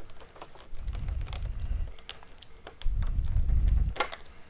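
Small plastic toy parts being handled off-camera: a run of light, irregular clicks and taps, with two stretches of low rumbling handling noise, the second near the end.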